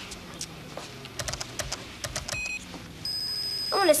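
Computer keyboard keys clicking in a quick run, then a short electronic beep about two and a half seconds in, followed by a steady high electronic tone.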